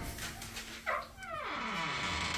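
The door of a brand-new Samsung Bespoke over-the-range microwave squeaking as it swings open: a click, then a drawn-out squeal falling in pitch, cat-like. The door's hinge is squeaky even though the oven is new.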